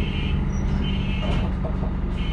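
Enviro 400 double-decker bus running with a low rumble, while a high electronic beep in the cab sounds about once a second, each beep about half a second long.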